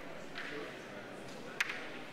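A single short, sharp click of crokinole discs in play, about one and a half seconds in, over the faint murmur of a large hall with players and voices.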